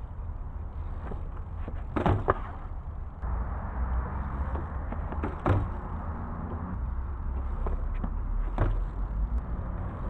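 BMX bike riding on a concrete skate park: a steady low rumble of tyres rolling, growing a little louder toward the end, with a few sharp knocks.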